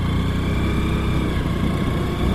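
Motorcycle engine running steadily while the bike cruises along a road.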